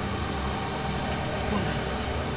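A steady low hum with a faint hiss under it.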